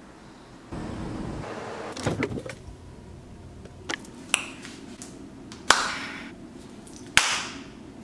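A few sharp knocks and clicks, the two loudest about six and seven seconds in, each trailing off, after a short stretch of rustling about a second in.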